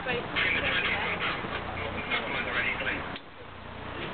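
Indistinct high-pitched voices chattering, not picked up as words, dropping away about three seconds in.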